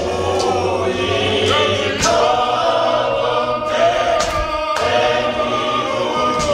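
Church congregation singing a hymn together, many men's and women's voices in harmony, with a few sharp knocks.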